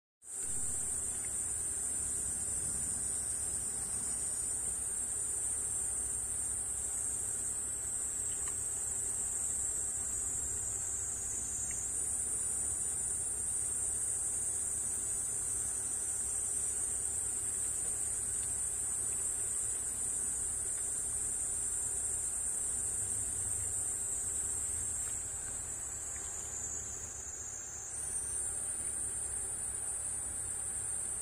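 Continuous high-pitched insect chorus, steady throughout, easing slightly a few seconds before the end.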